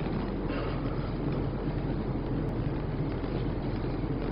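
Steady background noise with a constant low hum underneath, with no distinct events.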